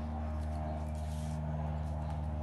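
A black crayon scratches faintly across paper as lines are traced, mostly in the first second and a half, over a steady low hum.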